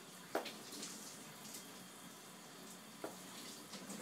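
Faint hiss of a shower running behind the curtain, with two light knocks, one just after the start and one about three seconds in.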